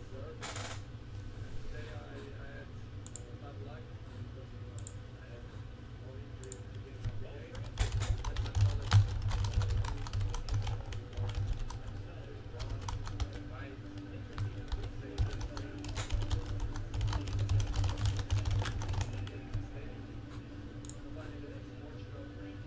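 Typing on a computer keyboard: quick runs of key clicks in spells, busiest through the middle stretch, with light thuds on the desk.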